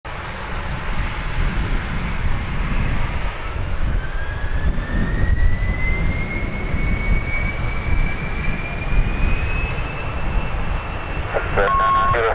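Engines of a Bombardier BD-700-1A10 Global Express business jet, its two Rolls-Royce BR710 turbofans, running at takeoff power during the takeoff roll, over a steady low rumble. From about four seconds in, a whine rises steadily in pitch.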